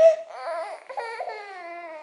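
A baby fussing and crying: a sharp cry at the start, then a quieter whining cry that falls in pitch. She has been fussy all day with a slight fever, which her mother puts down to teeth coming in.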